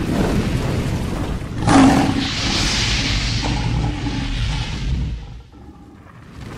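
Sound effects for an animated logo intro: a low rumble with a sudden boom about two seconds in, followed by a long hissing whoosh that dies away shortly before the end.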